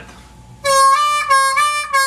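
A C diatonic harmonica playing a clean single note on the four-hole draw, bent down and released, in about three short repeated notes that begin about half a second in.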